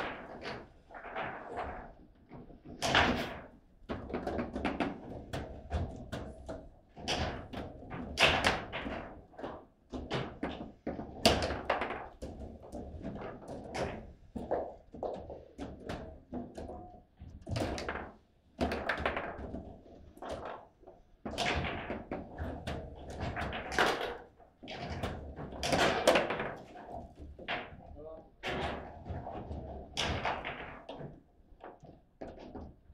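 Table football being played: sharp knocks as the ball is struck by the plastic men and rods bang against the table, coming at irregular intervals with a few louder slams among them.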